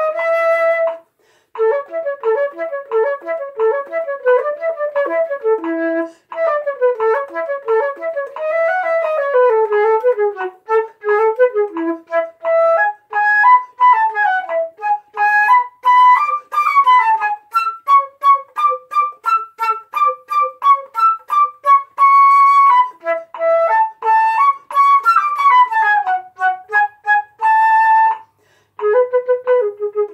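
A solo concert flute playing one part of a lively flute duet in A major: quick, detached notes in a single melodic line. It breaks off briefly about a second in and again shortly before the end.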